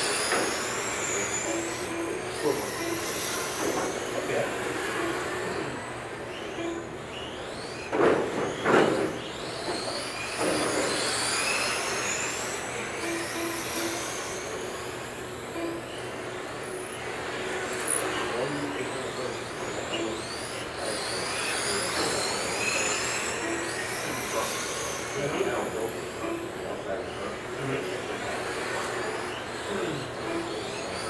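Several electric radio-controlled vintage Trans-Am race cars running laps on a carpet track, their motors and gears making high-pitched whines that rise and fall as they accelerate and brake. A few loud bangs come about eight to ten seconds in.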